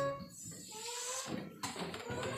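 An organ chord dies away, leaving a quiet room with faint, indistinct background sounds and a single sharp knock about one and a half seconds in.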